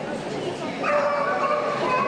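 A dog whining: one drawn-out, high whine that starts just under a second in and lasts about a second.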